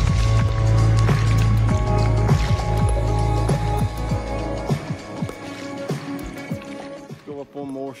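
Background music with sustained chords over a heavy bass line. The bass drops out about halfway through and the music then thins and grows quieter.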